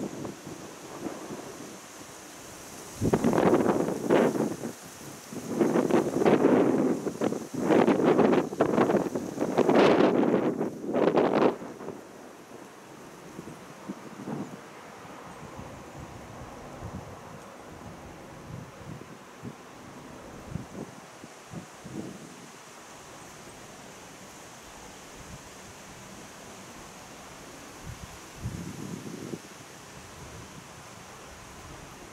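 Wind gusting across the microphone: several loud, ragged gusts in the first half, then steady, quieter wind noise, with one short gust near the end.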